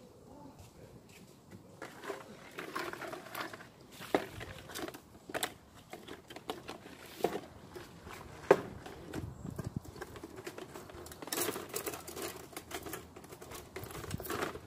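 Handling noises from a plastic bucket and plastic bag: irregular rustling and light clicks, with sharp knocks about four and eight and a half seconds in.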